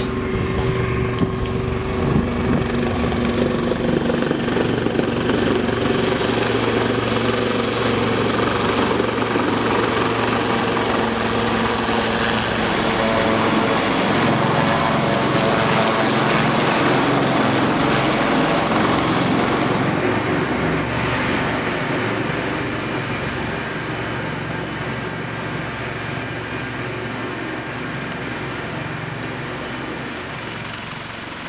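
Sea Lynx naval helicopter's rotors and twin turbines running steadily as it approaches and hovers over a frigate's flight deck to land. It is loudest in the middle and quieter near the end once it is down on deck.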